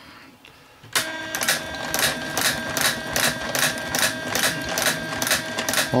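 A 3D-printed coil winder starts turning about a second in and runs steadily: a machine hum with a turn counter clicking about three times a second, one click for each turn of the bobbin as copper wire winds on.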